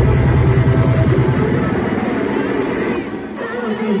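Loud live electronic dance music with a heavy, fast-pulsing bass that drops out about two to three seconds in for a breakdown.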